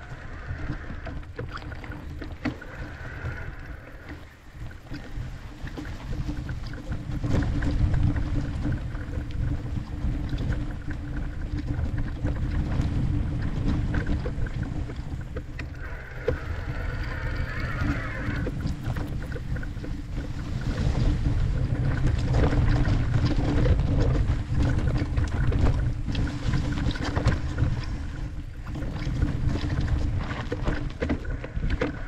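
Wind buffeting the camera microphone, mixed with knobby tyres rolling over a dirt-and-grass trail and light rattles and knocks from the electric mountain bike as it descends. The noise grows louder about seven seconds in and again after about twenty seconds, as the bike picks up speed.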